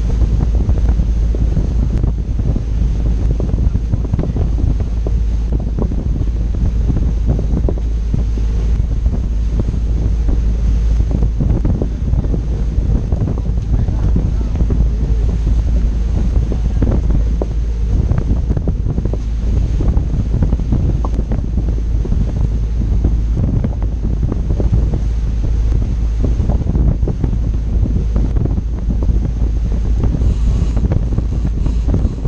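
Steady wind buffeting the microphone of a camera on a moving boat, with the rush of water from the boat's wake underneath.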